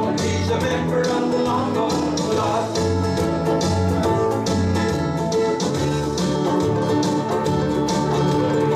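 Ukulele ensemble strumming chords together in an instrumental break of an upbeat song, with a steady strumming beat over a bass line.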